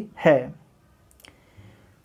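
A man's voice ending a word, then a single faint click about a second and a quarter in.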